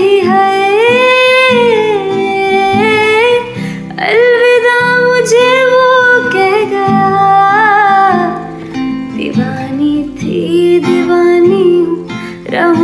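A woman singing long held, gliding notes without clear words, accompanied by strummed acoustic guitar chords. The voice pauses briefly twice and drops to a lower held note for the last couple of seconds.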